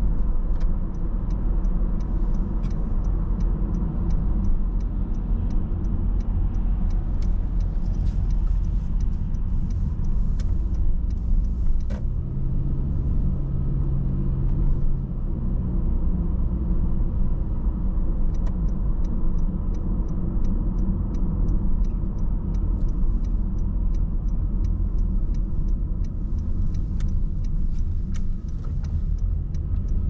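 A car driving, heard from inside the cabin: a steady low engine and road rumble. At times there is a faint, fast ticking.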